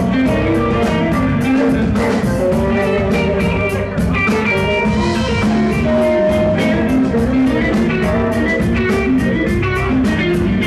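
Live blues band playing an instrumental stretch: electric guitar lines over a steady drum-kit beat, with no singing.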